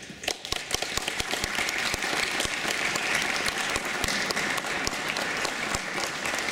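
An audience applauding: many hands clapping together, building over the first couple of seconds and then holding steady.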